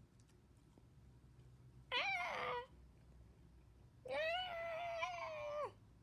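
A cat meowing twice: a short meow about two seconds in that falls in pitch, then a longer, drawn-out meow about four seconds in that holds and drops away at the end.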